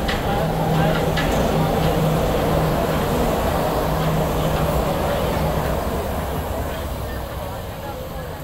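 Walt Disney World monorail train running, a steady hum with a low tone that drops in and out, easing off toward the end, with people's voices mixed in.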